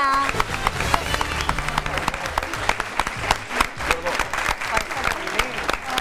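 Studio audience applauding, a dense run of claps, with voices mixed in.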